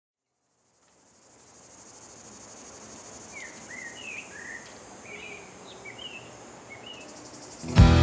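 Bush ambience fading in after a second of silence: a steady high insect drone with a run of short bird chirps over it. Just before the end, full-band music comes in suddenly and loudly.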